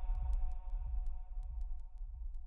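The bass-boosted Punjabi song fading out at its end: held synth tones over deep bass, with quick, evenly spaced light ticks, all dying away.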